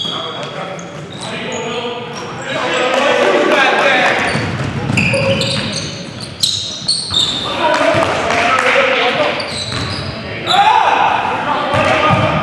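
Live game sound of an indoor basketball game: players shouting and calling out over the ball bouncing on the court, with a couple of sharp thuds a little past the middle. Everything echoes in a large gym.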